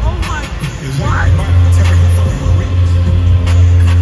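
Live concert music played loud through an arena sound system, heard from the crowd. A deep, sustained bass tone swells in about a second in, with a few voices shouting over it near the start.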